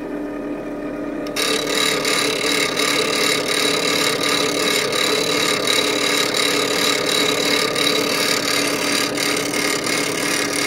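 Delta bench grinder running with a steady motor hum, and about a second in a steel chisel is pressed to the spinning wheel and ground continuously, a loud steady grinding noise over the hum. The chisel's bevel is being ground down to a low 17-degree angle.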